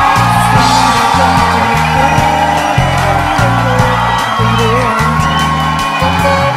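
Jazz band recording playing an instrumental passage: electric bass notes stepping under drums and cymbals, with a melodic lead line above.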